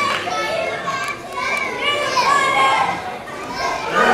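Children in a crowd shouting and calling out in high-pitched voices, with a murmur of crowd chatter beneath.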